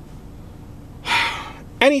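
A man takes one loud breath, about half a second long, about a second in. Under it runs a steady low rumble.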